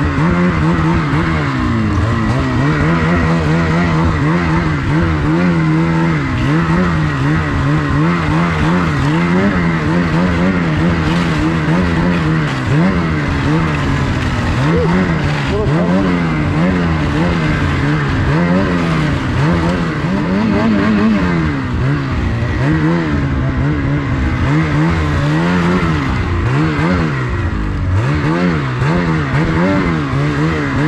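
Ski-Doo snowmobile's turbocharged two-stroke engine revving up and down over and over, about once a second, as the sled is worked through deep snow, with a steady high whine over it.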